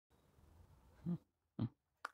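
Faint room hiss with two short, quiet voice-like sounds, one about a second in and one near the end.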